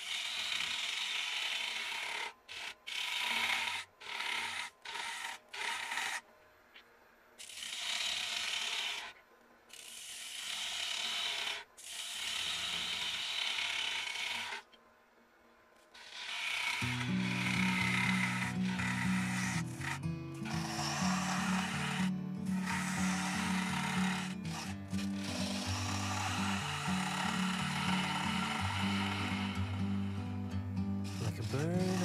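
Carbide hook tool cutting the inside of a spinning spalted birch bowl on a lathe: a scraping hiss in runs of a few seconds, broken by short pauses. From a little past halfway, background music with steady low notes plays under the cutting.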